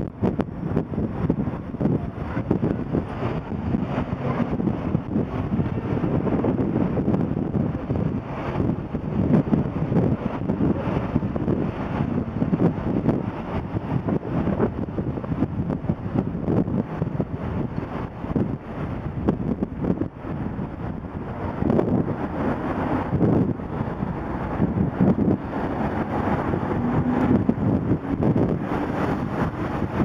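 Wind buffeting the microphone of a cyclist's camera while riding in town traffic, with car engines mixed in; the rushing noise rises and falls unevenly throughout.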